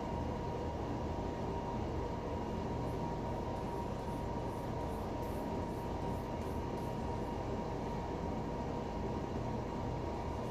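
A steady machine hum and rush with a thin steady whine over it, unchanging throughout.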